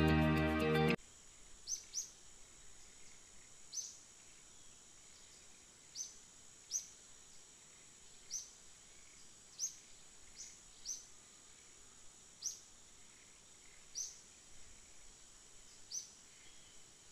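Background music stops about a second in; then a small bird chirps, short high chirps every one to two seconds, over a faint steady high-pitched hum.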